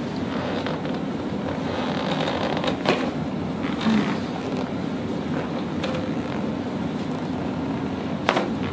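A steady low hum, with hands rubbing and pressing on a shirt over the upper back and a few soft clicks, the clearest about three and four seconds in.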